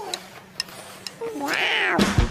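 A short high-pitched voice-like call near the end, rising and then falling in pitch, after a quieter stretch with a few faint clicks.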